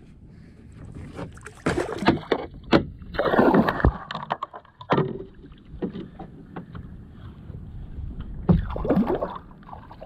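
Water slapping and splashing against a fishing kayak's hull in irregular bursts, with knocks on the hull, while a hooked fish is fought on a bent rod.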